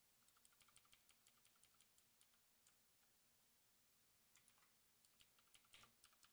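Faint typing on a computer keyboard: a quick run of keystrokes in the first two seconds, a pause, then another burst of keystrokes near the end.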